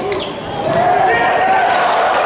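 Indoor volleyball rally: ball hits and sneaker squeaks on the court over arena noise, with shouting voices that grow louder about halfway through.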